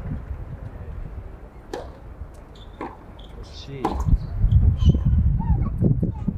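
Sharp knocks of a tennis ball, about a second apart, in the first four seconds; from about four seconds in a louder low rumble takes over, with faint spectator voices.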